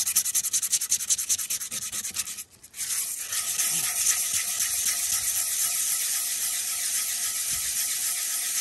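Hand abrasive being scrubbed over the rough inside of a cast iron skillet. It begins with quick back-and-forth scraping strokes, pauses briefly about two and a half seconds in, then turns to a steady hissy scrubbing. The gritty pre-seasoned finish is being taken off so the pan can be re-seasoned from scratch.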